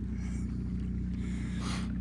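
Electric motor drive of an Old Town Predator MK kayak running with a steady low hum while the kayak moves across calm water. A short breathy puff near the end.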